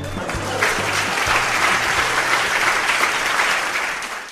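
Audience applause over the closing bars of a piece of music, the clapping building up about half a second in and starting to fade near the end.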